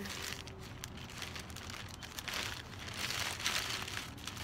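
Plastic packaging crinkling and rustling as it is handled and opened, with a louder stretch of rustling a little past halfway.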